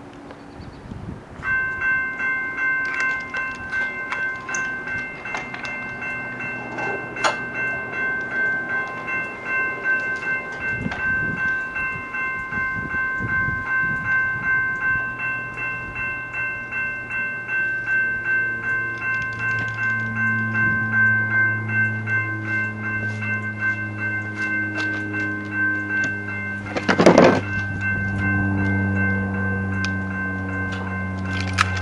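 Railroad crossing signal bell ringing in a steady repeated rhythm. About halfway through a lower mechanical hum joins as the crossing gate arm lowers, and a loud thunk comes near the end.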